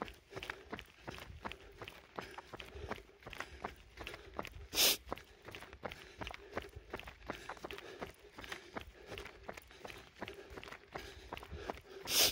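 A runner's footfalls on an asphalt road, a steady rhythm of light steps. About five seconds in there is one brief, loud rush of noise.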